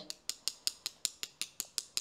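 Rapid, even taps of one paintbrush against the handle of another, about seven a second, knocking watercolour paint off the loaded brush as a splatter.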